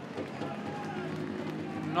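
Floorball arena sound during play: a low, steady murmur of crowd and players, with faint scattered clicks of sticks and ball.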